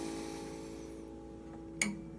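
An acoustic guitar chord left ringing and slowly fading between sung lines, with one short click near the end.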